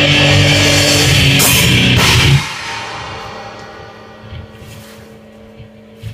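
Death metal played live by a band on distorted electric guitar and drum kit with heavy cymbals, ending abruptly about two and a half seconds in. The last chord and cymbals then ring away over a couple of seconds, leaving a faint steady low hum.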